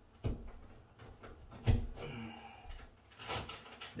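A few knocks and clicks of a metal mounting bracket and screw being handled against a drywall wall, the loudest just before halfway, with a short scrape near the end.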